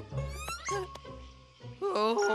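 Cartoon background music with a quick rising, squeaky sound effect, followed by a short wordless vocal sound from a cartoon character.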